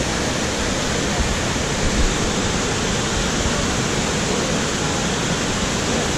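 River water rushing steadily over a low weir and through boulders, a continuous even white-water noise.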